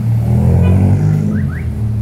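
A taxi car passing close by at street level. Its engine hum and tyre noise swell to a peak about half a second in, then fade as it moves away.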